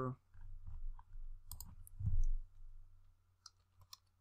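A few scattered computer keyboard keystrokes as a short word is typed, with a low thump about two seconds in.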